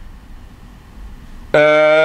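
Low, steady room noise, then about one and a half seconds in a man's voice sets in abruptly with one long vowel held at a level pitch, which leads straight into his speech.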